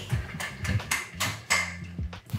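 Quick footsteps on a hard kitchen floor, a run of light knocks about three a second. A low steady hum comes in about halfway through.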